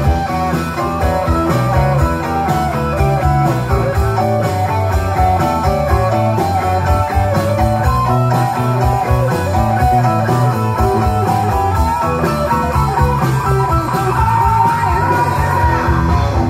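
A live rock band playing through a PA: electric guitar, keyboards and drums, with singing.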